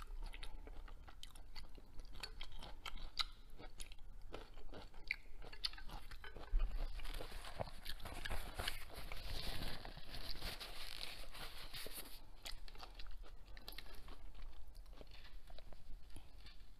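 Close-miked mouth sounds of a person chewing food, with crunches and small wet clicks throughout. About six and a half seconds in there is a single sharp knock, as of chopsticks set down on a plate.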